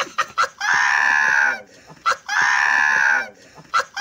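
A man's shrieking, high-pitched laughter: three long squealing peals of about a second each, with short breaths between.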